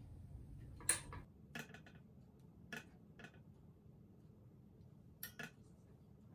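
Light metallic clinks and knocks of stainless steel kitchenware as raw sardines are picked out of a colander and laid in a pressure cooker basket. About six scattered clinks, the first the loudest.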